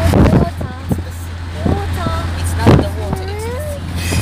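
Steady low road rumble inside a moving car's cabin, under people's voices chattering and calling out.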